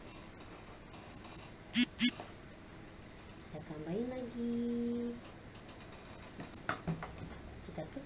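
Two sharp clicks a quarter-second apart about two seconds in, from the plastic serving spoon knocking as batter is spooned onto the pancakes in the pan. A little past halfway a person hums a rising 'hmm' and holds it for about a second.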